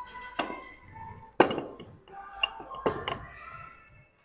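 Sharp metal clanks of weight plates being handled on a barbell: four knocks, the loudest about a second and a half in and two close together near the end, over steady background music.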